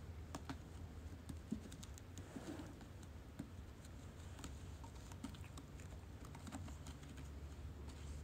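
A cat pawing at a tethered sisal-rope ball and a sisal-wrapped scratching post: faint, irregular soft clicks and scratches of claws catching on the rope, over a low steady hum.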